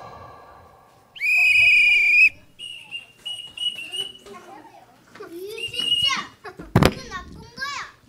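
A whistle blown twice: one loud steady blast of about a second, then a fainter, slightly wavering blast about as long, the kind blown to announce the arrest. Children's voices chatter through the pause, and a sharp knock sounds near the end.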